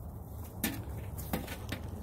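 A few faint, irregular knocks as a small dog's paws step onto an upturned metal lid.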